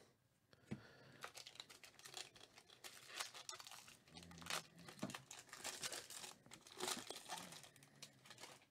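Foil wrapper of a 2019 Bowman Draft jumbo card pack crinkling and tearing in the hands as the pack is opened. It is a faint, continuous run of small crackles, with a few louder ones.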